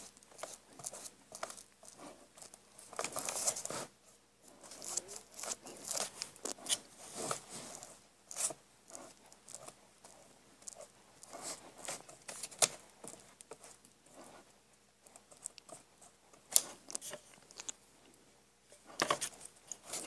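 A hand-held tool rubbed and pressed over paper glued onto a binder cover, smoothing the edges flat, giving faint, irregular scratchy strokes.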